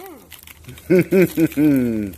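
A man laughing, three short laughs starting about a second in, the last one drawn out and falling. Faint scattered clicks and crinkles sound under it.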